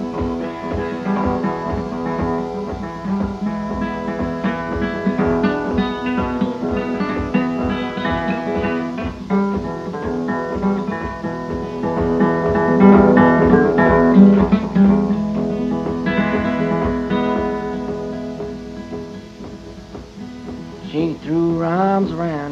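Acoustic guitar played alone in an instrumental break between sung verses of a folk ballad: a steady run of picked notes over a repeating bass. It softens a few seconds before the end, and the singing voice comes back in right at the close.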